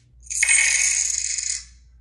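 A loud metallic jingle lasting about a second and a half, rising in quickly and then cutting off.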